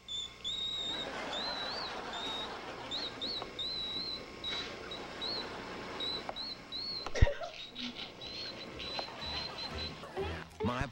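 An ear whistle: a woman pinches her nose shut with a tissue and forces air out through her ear, making a thin, high whistle that warbles in many short notes around one pitch. A steady noise lies beneath it, and a single sharp knock comes about seven seconds in.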